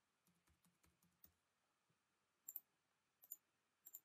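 Faint computer keyboard typing, a quick run of about six keystrokes in the first second, then a few sharper mouse clicks around the middle and near the end.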